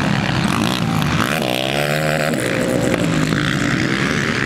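Racing quad bike engine revving as it passes, its pitch climbing about one and a half seconds in as it accelerates.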